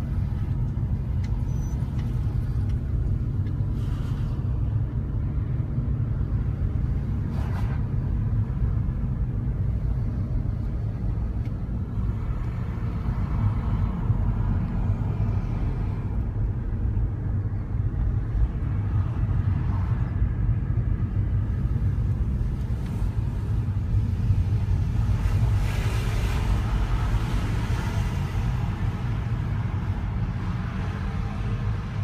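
Car driving along, heard from inside the cabin: a steady low engine and road rumble, with the road noise briefly louder and brighter near the end.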